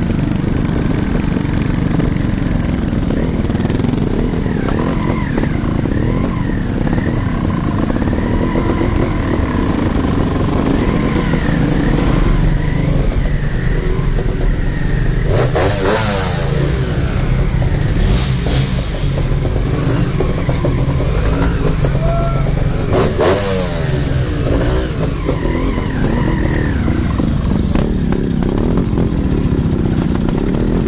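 Trials motorcycle engines running on and off the throttle, the revs rising and falling again and again, with louder bursts about halfway through while the bikes ride through a concrete culvert pipe.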